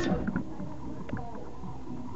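Low background of a house party indoors: faint, indistinct voices with a few light knocks.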